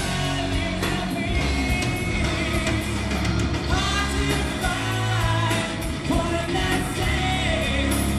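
A rock band playing live, with a singer's voice carried over steady drums.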